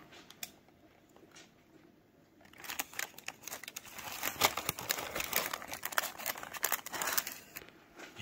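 Paper taco wrappers crinkling and rustling as they are handled and folded: a few faint clicks at first, then a dense run of rapid crackling from about two and a half seconds in until just before the end.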